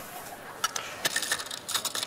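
Small round metal tea tin being opened by hand: a run of quick metallic clicks and scrapes from the lid and body, starting about half a second in.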